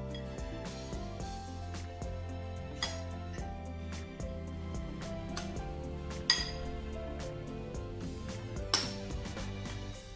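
Background instrumental music, with a metal spoon clinking against a glass bowl now and then as a mixture is stirred; the sharpest clinks come about three, six and nine seconds in, the one at six the loudest.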